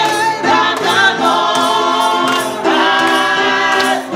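Small gospel choir of several voices singing together in sustained lines, with sharp percussive beats of hand claps.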